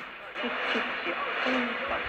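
A man talking on a mediumwave AM broadcast at 1422 kHz, heard through a Sangean ATS-606 portable radio's speaker. The sound is narrow, cut off sharply above about 4 kHz, with a steady hiss of static under the voice.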